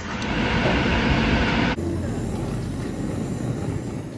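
Handheld kitchen blowtorch flame hissing steadily as it browns meringue. A little under two seconds in, the sound drops abruptly to a quieter, thinner hiss.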